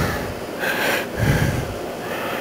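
A person breathing and sniffing close to the microphone, two noisy breaths in quick succession, while smelling rotted potatoes.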